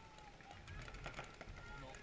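Faint voices talking, with a few short sharp clicks scattered through.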